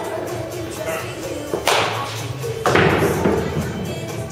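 Baseball being hit in an indoor batting cage: two sharp knocks about a second apart, the second the louder, over background music with vocals.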